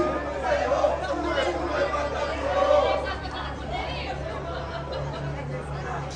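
A crowd of fans chattering and calling out, many voices overlapping. It is louder for the first three seconds or so, then dies down to lighter chatter.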